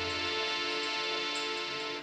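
A held instrumental chord from the stage band: many steady tones sustained at an even level, then cut off at the end.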